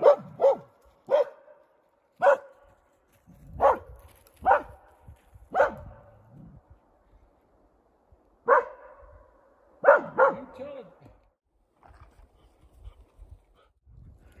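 A dog barking about ten times, in short sharp barks spaced unevenly over ten seconds, each bark followed by a ringing echo. The barks thin out near the end.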